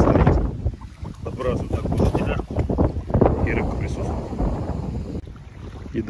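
Strong wind buffeting the microphone, a heavy, continuous low rumble that dips for a moment about a second in and eases near the end.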